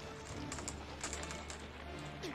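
Anime soundtrack: quiet background music under a scatter of faint crackling clicks, the sound effect of a body being frozen in ice.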